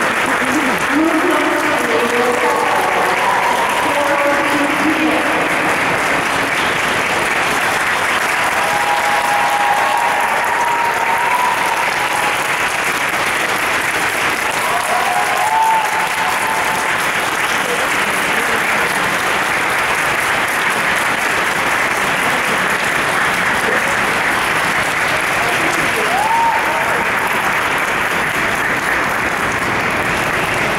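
Audience applauding steadily throughout, with a few voices calling out over the clapping.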